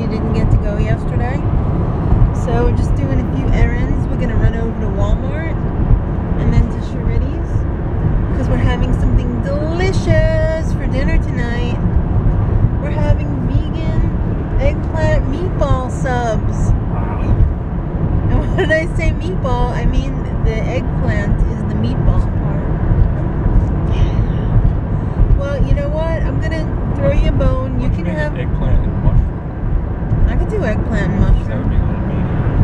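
Steady low road and engine rumble inside a moving car's cabin, with voices talking over it.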